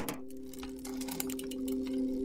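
Animated channel-intro sound effect: a steady droning chord of a few held tones with rapid, faint ticking over it, slowly getting louder.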